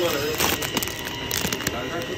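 Crinkling of a cellophane package of dried fish being grabbed and handled, a few short crackles.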